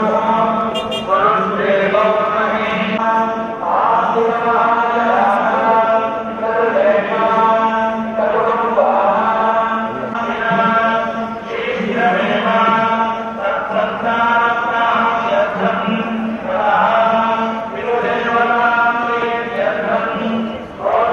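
Devotional Hindu chant, a voice singing repeated melodic phrases about two seconds long over a steady low drone.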